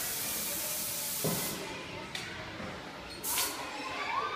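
A steady hiss, like escaping air or a spray, that cuts off suddenly about a second and a half in; a thump comes just before it stops, and a second short hiss follows near the end, with voices in the background.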